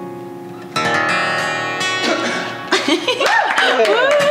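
Acoustic guitar ending a song: the last notes fade, then a final chord is strummed about a second in and left to ring. Talking starts near the end.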